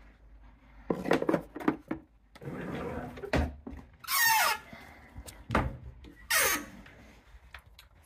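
Wooden bathroom vanity drawer being pushed shut and the cabinet door below opened: a few knocks and thumps, and two short squeaks, about four and about six seconds in.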